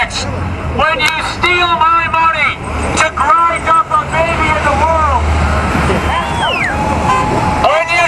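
Road traffic passing close by, car engines and tyres rumbling, under a man's voice shouting through a megaphone. A car horn sounds briefly near the end.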